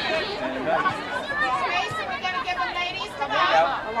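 Several voices talking over one another: sideline spectators chattering during play, with no single clear speaker.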